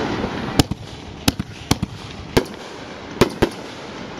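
Aerial fireworks bursting overhead: a rushing hiss right at the start, then about eight sharp bangs at irregular intervals, some in quick pairs.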